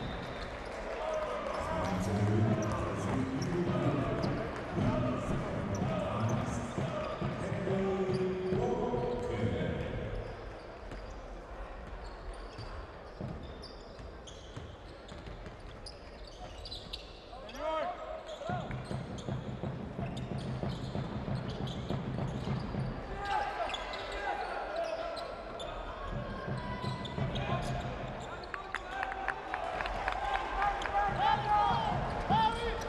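Basketball dribbled on a hardwood court during live play, with voices calling out over the arena. It goes quieter for several seconds in the middle.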